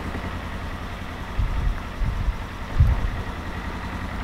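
Polaris Ranger XP 1000 side-by-side's twin-cylinder engine idling with a steady low rumble. A few short, dull low thumps come in the middle.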